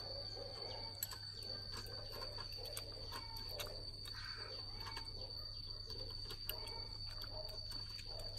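Faint small clicks of a metal spoon against a ceramic bowl of dipping sauce and a fork against blood cockle shells, a few scattered ticks over a quiet background with a thin steady high-pitched tone.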